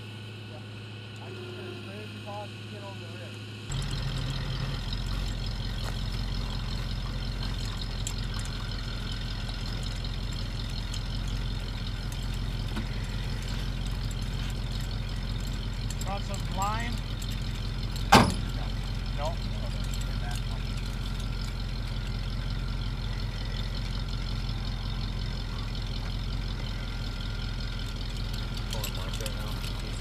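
Bucket truck's engine running at a steady idle, quieter for the first few seconds and then louder and steadier from about four seconds in. A single sharp knock sounds about halfway through.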